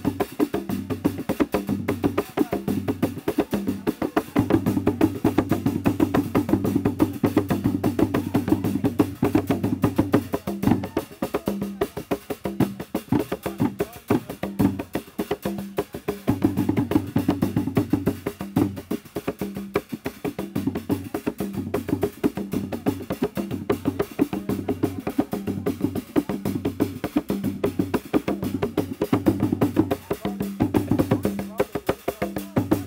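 Traditional ngoma drums of a Kiluwa dance ensemble played in a fast, dense rhythm, with a low repeating pulse under the rapid strokes.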